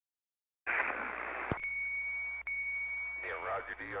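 Two-way radio receiver: after a short silence a burst of static hiss, a click, then a steady high-pitched whistle tone lasting about a second and a half that briefly drops out, before a voice comes through the radio near the end.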